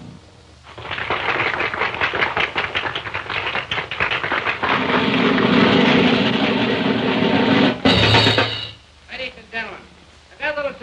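Audience clapping, a dense patter of many hands starting about a second in, with crowd voices rising under it in the second half. There is a sudden loud burst near the end, and a man's voice begins just after.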